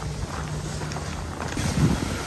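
Wind rumbling on the microphone, uneven and low, with a faint steady hum underneath.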